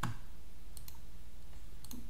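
Computer mouse clicks: one sharp click at the start, then a few faint clicks near the middle and again just before the end.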